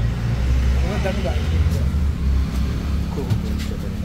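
A steady low rumble, as of a running motor or engine, with faint voices in the background.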